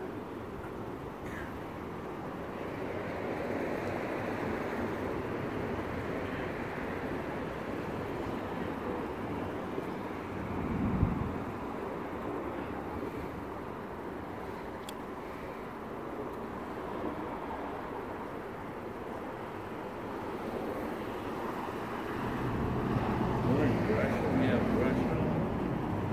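Steady outdoor traffic noise with indistinct voices in the background. A low rumble swells briefly about halfway through, and the talking gets louder near the end.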